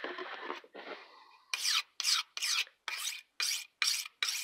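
A long knife blade being stroked against a handheld sharpening stone, sharpening its edge. The quick, even strokes begin about a second and a half in, at roughly three a second.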